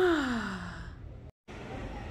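A person's voiced sigh, falling in pitch for under a second. The sound drops out completely for an instant, then quiet room tone follows.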